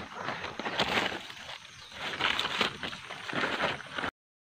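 Leaves and stems rustling and crackling as they are handled close to the microphone, in uneven surges.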